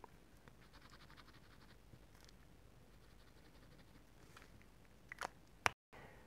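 Faint scratching of a marker nib across card in two short stretches, followed by a few sharp clicks near the end.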